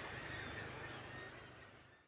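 Faint, steady outdoor background ambience that fades away near the end.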